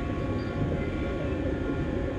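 Underwater ambience sound effect: a steady low rumble and rushing wash of water.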